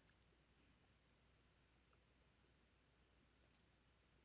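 Near silence, broken by a faint, quick double click of a computer mouse about three and a half seconds in.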